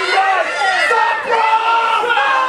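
A wrestling crowd shouting and yelling, with several voices overlapping at once.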